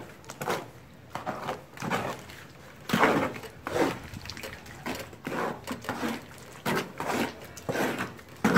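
A mason's trowel stirring wet cement mortar in a mixing box, with irregular wet scraping and slopping strokes about once or twice a second.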